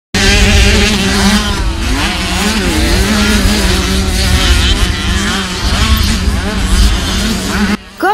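Several small children's motocross bikes racing, their engines revving up and down in overlapping rising and falling whines. The sound stops suddenly just before the end.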